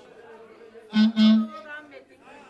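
Two short, loud notes on the same steady pitch from a band instrument, the second a little longer, over the chatter of a crowded room.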